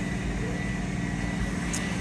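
Steady mechanical hum of commercial kitchen equipment, such as ventilation and refrigeration: a low drone made of several hum tones, with a faint steady high whine above it.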